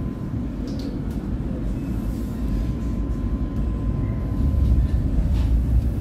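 Oslo Metro train running, heard from inside the carriage: a steady low rumble of wheels on rail that grows louder over the last second or two.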